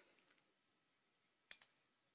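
Near silence: faint room tone, broken by two quick, faint clicks close together about one and a half seconds in.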